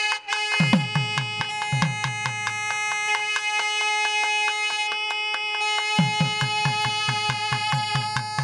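A pair of nadaswarams holds one long, bright note together over a steady drone. A thavil drum accompanies them with sharp strokes throughout. Deep booming beats come about a second in, and a quick run of deep beats starts about six seconds in.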